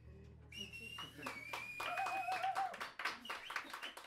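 A small audience applauding and whistling as a jazz tune ends. Scattered claps start about half a second in, with a long high whistle and a shorter warbling lower whistle over them, while the band's last low held note fades away in the first second or so.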